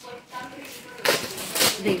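Plastic package of banana leaves crinkling as it is handled and shaken, a brief crackly rustle in the second half.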